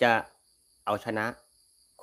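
A man speaking Thai in two short phrases, over a steady, thin, high-pitched chirring of insects that carries on between his words.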